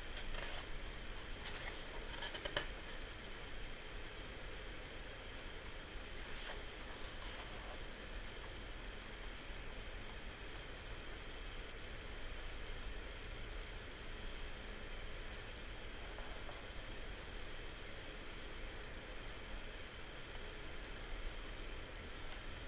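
Quiet room with a steady low hum and hiss, and a few soft rustles of paperback manga pages being turned, with a small click in the first few seconds and another rustle around six seconds in.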